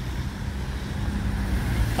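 A motor vehicle's engine running with a steady low hum, growing slowly louder.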